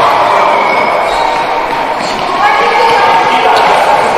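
Futsal ball being kicked and bouncing on a wooden sports-hall floor, with players and spectators calling out in the large hall.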